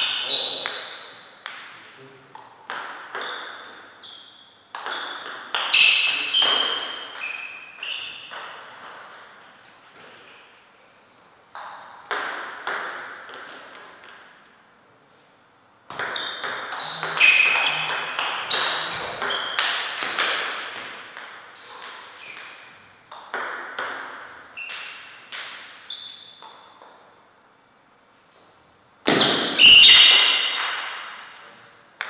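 Table tennis rallies: a plastic ball clicking back and forth off the players' paddles and the table in quick runs. Each hit rings briefly, and there are short pauses between points.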